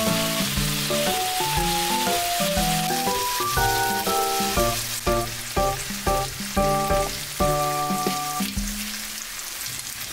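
Marinated beef sizzling as it fries in a stainless steel pan, under bouncy background music with a steady beat. The music stops about eight and a half seconds in, leaving the frying sizzle.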